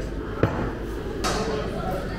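Restaurant dining-room background: steady room noise with faint voices, one sharp click about half a second in and a brief rustle a little after one second.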